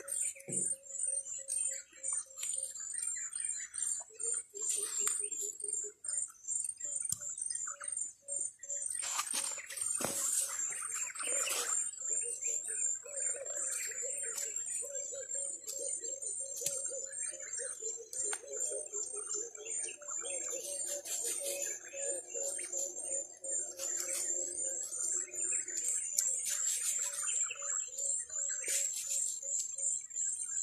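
Steady, rhythmic high-pitched chirping runs throughout. Scattered short rustles and taps come from cassava stem cuttings being placed on a soil bed.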